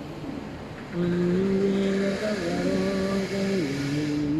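A man's voice reciting the Quran in a slow melodic chant, growing louder about a second in. It holds long notes that step down in pitch.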